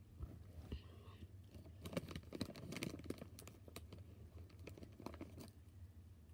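A snack bag of Takis being handled and opened, crinkling and tearing in a quick run of small crackles from about two seconds in until near the end.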